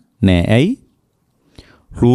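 A monk's voice preaching in Sinhala: one drawn-out syllable that falls in pitch, then a short pause and a faint breathy sound before he speaks again.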